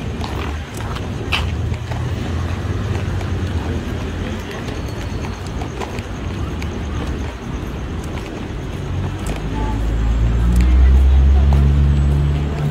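Busy pedestrian street ambience: many people talking at once, scattered footsteps and a constant background noise. A low rumble grows louder over the last few seconds.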